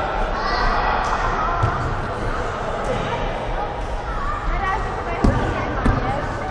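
Children's voices chattering and calling in an echoing gym hall, with a few thuds of a football being kicked and hitting the floor, the loudest two near the end.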